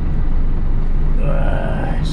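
Tractor-trailer truck's diesel engine running steadily, a low rumble heard inside the cab as the truck climbs a ramp. A little over a second in, a short steady tone joins it.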